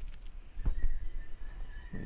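Camera handling noise: dull bumps and rustling as the camera is moved, loudest a little under a second in.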